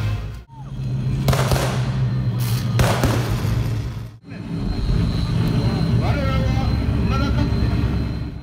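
Live heavy-metal band through a concert PA, recorded on a phone: loud and distorted with heavy bass, in three short pieces cut together. A voice wavers over the band in the last part.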